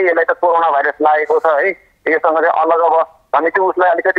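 A man speaking over a telephone line, his voice thin and cut off at the top.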